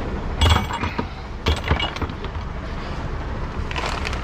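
Tools and loose items clinking and knocking as a gloved hand rummages through plastic bins in a truck's side storage locker, with the sharpest knocks about half a second and a second and a half in, over a steady low rumble.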